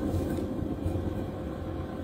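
A steady low rumble of background noise with a faint thin hum, and no speech.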